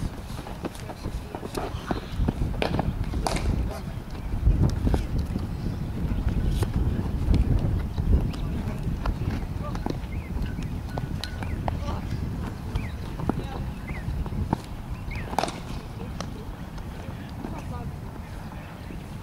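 Cricket net practice: scattered sharp knocks of a leather cricket ball off a bat and into the net over a steady low rumble, with faint distant voices.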